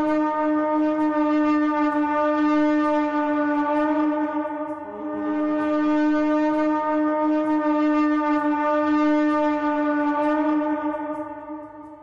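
A horn blowing long, steady blasts. One note ends about five seconds in, and after a short break a second long blast follows and fades out near the end.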